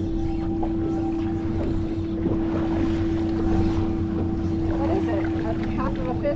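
Boat engine idling: a steady low rumble with a constant hum that does not change.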